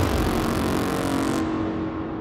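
Psytrance mix at a transition: a loud hissing wash of noise whose top cuts off suddenly about one and a half seconds in, leaving a fading low drone.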